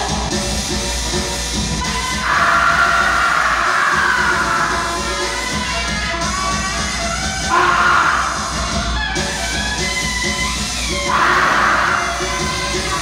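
Live music accompanying a traditional Vietnamese opera (hát bội) stage scene, running steadily, with three louder held, wavering passages about two, seven and a half, and eleven seconds in.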